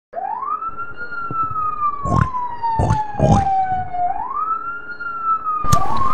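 A wailing siren: each cycle rises quickly and then falls slowly over about four seconds, heard twice. Three dull thumps come between about two and three and a half seconds in, and louder sharp hits start near the end.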